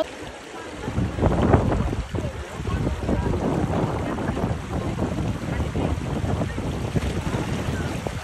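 Wind buffeting the microphone: a loud, uneven rumbling rush that starts about a second in.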